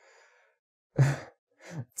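A man sighs about a second in, a breathy exhale followed by a short voiced sound.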